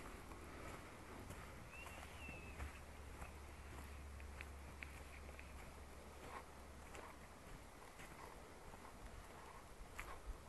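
Faint, irregular footsteps crunching on dry leaves and twigs along a dirt path, with a short high chirp about two seconds in.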